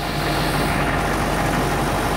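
Diesel engine of a Hitachi amphibious excavator running steadily.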